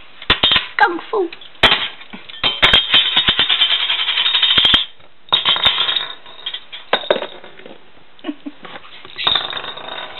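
Metal mason-jar lid ring spun on a hard countertop, clattering and rattling as it wobbles, like a coin spinning down. The longest rattle stops abruptly about five seconds in, and shorter bouts of clattering follow.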